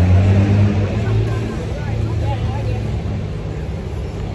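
A motor vehicle's engine running close by, a steady low hum, with people's voices faintly in the background.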